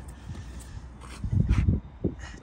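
Wind buffeting the microphone: a ragged low rumble that swells about a second in and is loudest for about half a second.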